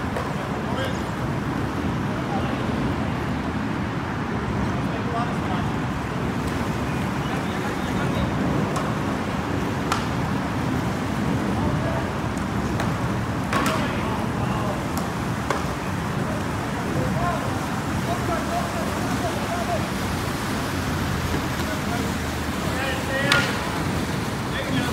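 Steady outdoor rumble with faint, distant voices of canoe polo players calling out on the water, and a few short sharp knocks, the loudest near the end.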